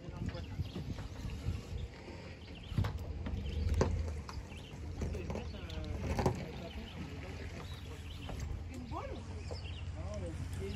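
Faint, indistinct talking with a few sharp knocks and a low steady rumble underneath.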